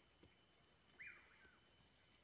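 Faint, steady, high-pitched insect hum with a short faint call about a second in.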